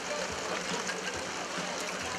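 Steady outdoor background noise: an even hiss with a faint murmur of people.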